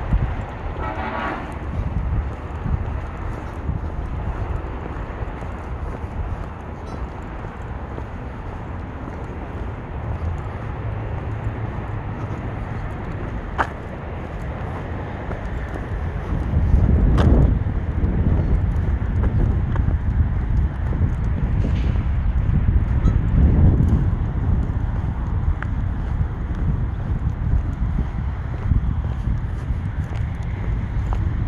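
Wind buffeting the microphone, a steady low rumble that grows stronger about halfway through. A brief honk sounds about a second in, and there are a couple of sharp clicks later on.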